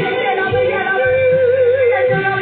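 A worship song with singing over instrumental accompaniment, played loud through a PA. In the second half a voice holds one long wavering note.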